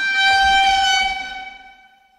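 A horn-like sound effect: one steady high note with a stack of overtones and a hiss under it. It swells in, holds for about a second, then fades away near the end.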